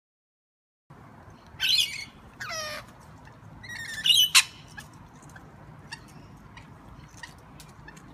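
Rainbow lorikeets squawking, starting about a second in: three loud bursts of screeching calls in the first half, then scattered softer chirps.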